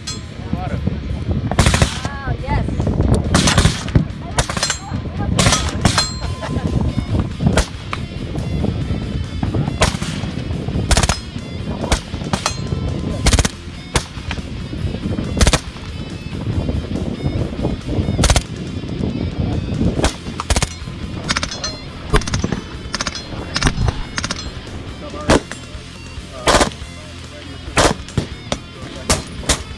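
Gunfire from several rifles and carbines on a firing line: single shots and short quick strings at irregular intervals, each a sharp crack.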